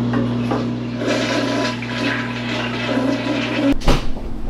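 Toilet flushing: water rushing, over a steady low hum. It cuts off sharply near the end.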